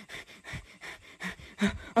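Rapid, shallow panting breaths close to the microphone, about four or five a second, as from a frightened, out-of-breath person.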